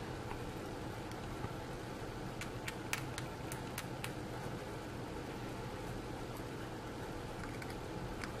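Low steady background hum with a handful of faint light ticks between about two and a half and four seconds in: a hobby knife blade scraping and cutting at a pewter miniature's hair, deepening the recesses to hide a mold line.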